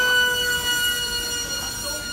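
Electric motor and propeller of a foam RC flat jet at full throttle on its takeoff run: a steady high whine, having just wound up in pitch, that fades somewhat as the plane climbs away.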